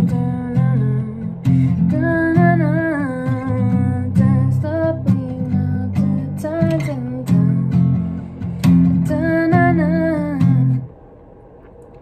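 Acoustic guitar strummed in chords while a woman sings a melody over it, working out a tune for new lyrics. The playing and singing stop abruptly about a second before the end.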